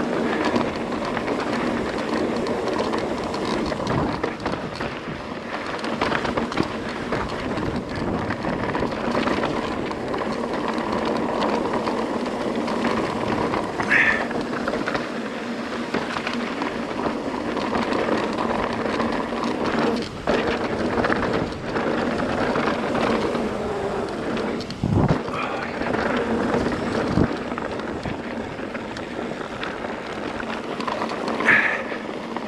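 Mountain bike rolling fast down a dry dirt and gravel trail: tyres on loose gravel and the bike rattling and knocking over the bumps, with a brief high squeak partway through.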